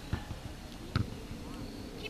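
Outdoor soccer-field ambience: a steady hiss with faint distant voices, broken by two dull thumps about a second apart, the second louder.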